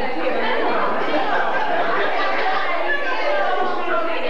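Many people talking at once: a steady jumble of overlapping conversation, with no single voice standing out.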